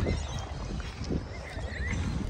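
Footsteps crunching on a gravel path at a walking pace, irregular steps over a steady low rumble of wind on the microphone.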